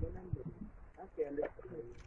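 Quiet, indistinct voices murmuring in short phrases, with no clear sound from the whale or the boat.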